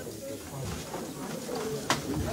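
Faint murmur of voices in a hall, with one sharp click just before the end.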